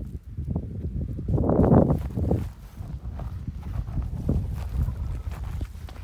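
Footsteps through dry grass with rustling of the stalks, and a louder rush of brushing noise about a second and a half in.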